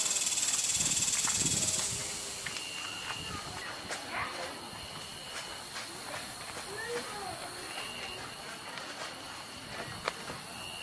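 Night-time insect chorus: one insect trills steadily and high throughout, while a shorter buzzing call repeats about every two and a half seconds. A louder, higher buzz runs through the first two seconds and then stops.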